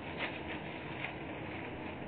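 Faint rustling and light ticks of papers being handled at a shop counter, over a steady hiss of low-quality CCTV audio.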